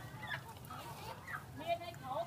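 Live chickens clucking, with a louder sharp call near the end, over background voices.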